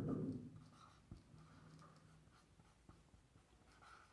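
Marker pen writing on a whiteboard: faint strokes as letters are written, with a light tick about a second in.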